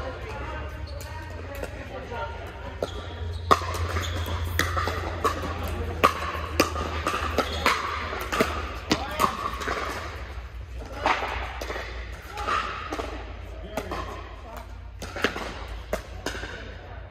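Pickleball paddles hitting a plastic ball in a rally. A quick run of sharp pops starts a few seconds in, several a second at its busiest, then scattered hits near the end. They echo in a large indoor hall over background voices and a low hum.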